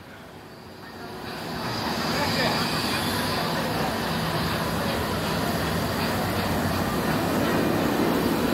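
Steady mechanical rumble of amusement-ride machinery with a faint high whine, swelling over the first two seconds and then holding.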